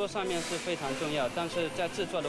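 A man speaking, his words not transcribed, with a steady hiss behind the voice.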